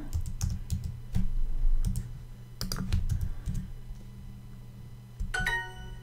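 Typing on a computer keyboard: a quick run of keystroke clicks over the first three and a half seconds. It is followed about five seconds in by Duolingo's short, bright correct-answer chime.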